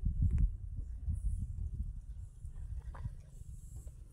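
Low, uneven rumble of wind buffeting the microphone, with a few faint clicks.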